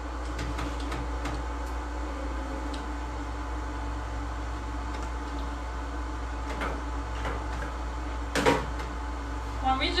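Clicks and knocks from handling at an open pretreatment-machine drawer, over a steady low hum, with one louder knock about eight and a half seconds in.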